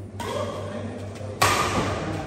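Badminton rally: a racket striking the shuttlecock, with a sudden loud smack about one and a half seconds in, the loudest sound here. Onlookers' voices and a steady low hum run underneath.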